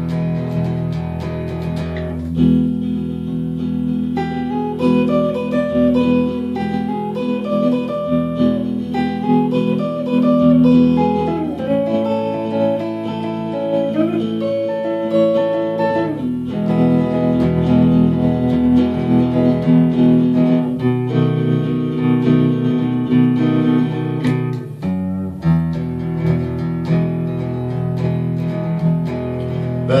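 Fender electric guitar playing an instrumental break with no singing. Single-note lead phrases move up and down over steady strummed low chords for the first half or so, then the playing settles back into chords.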